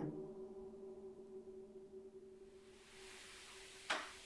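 A low, steady drone fades slowly away, then a single sharp knock sounds near the end, loud enough to be heard plainly across the room.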